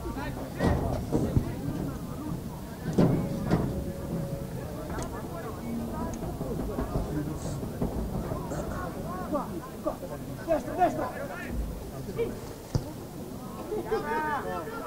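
Indistinct voices and calls from spectators and players at an outdoor rugby match, over steady open-air background noise, with brief louder sounds about one and three seconds in.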